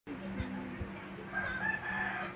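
A rooster crowing, starting a little over halfway in, over a steady low hum. Two soft low thumps come near the start.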